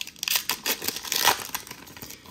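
Foil wrapper of a Panini Revolution soccer card pack being torn open and crinkled by hand: a quick, irregular run of sharp crackles, loudest a little past the middle.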